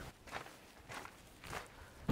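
Faint footsteps on a steep dirt and rock hiking track, about three steps over two seconds.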